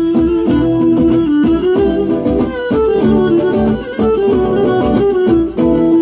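Instrumental passage of Cretan folk music: a Cretan lyra bows the melody over laouta strumming a steady rhythm, with no singing.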